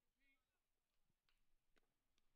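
Near silence, with a brief faint distant voice early on and two faint clicks.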